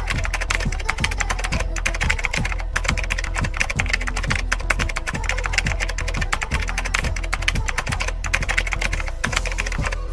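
Rapid computer-keyboard typing, a continuous stream of key clicks, over a steady low hum.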